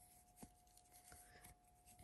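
Near silence: faint rubbing and a few small clicks of a crochet hook drawing yarn through a double crochet stitch, over a faint steady hum.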